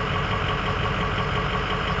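Ford 6.0-litre Power Stroke V8 turbo diesel idling steadily, heard from inside the cab.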